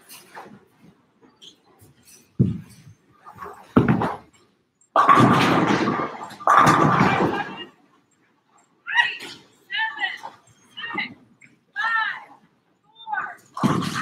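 Bowling balls thudding down onto a wooden lane, then two loud pin crashes in quick succession a few seconds in, followed by a string of short excited vocal yelps.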